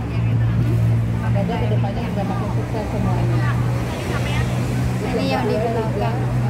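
Several people talking in the background over a steady low hum.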